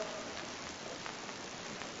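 Steady, even hiss: background noise of an old tape recording in a pause between words.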